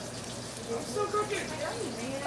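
Beef patties, French toast and eggs sizzling steadily in stainless frying pans on a gas range, with faint voices in the background about halfway through.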